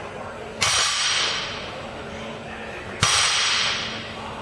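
Two sharp hissing rushes, one about half a second in and one about three seconds in, each starting suddenly and fading out over about a second, over a faint steady low hum.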